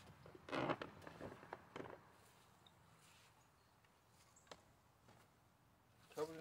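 A short scrape and a few light knocks as a dirt bike seat is handled and set onto the bike's frame, mostly in the first two seconds, with one faint click later.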